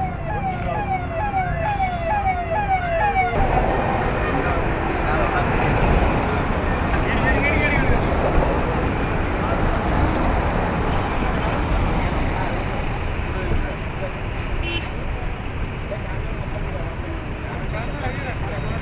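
Convoy siren sounding a fast repeating whoop, about two to three rising sweeps a second, cut off abruptly a little over three seconds in. After that comes steady road and engine noise of the convoy's vehicles driving at speed.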